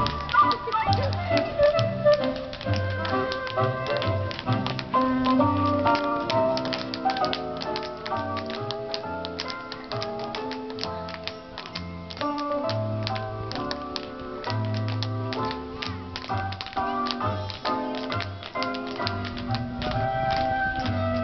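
A group of children's tap shoes clicking on a stage floor in quick, uneven runs, over music with a melody and a bass line.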